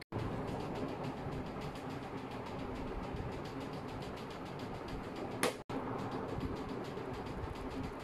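Steady background hiss of room noise, broken twice by a sudden short dropout to silence at video edits, near the start and about five and a half seconds in, with a brief sharp sound just before the second dropout.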